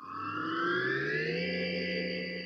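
Electronic transition sound effect: a synthesized tone with several harmonics that glides upward in pitch for about a second and a half, then holds steady.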